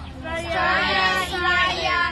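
A class of children reciting aloud together in chorus, starting about a quarter second in and breaking off at the end.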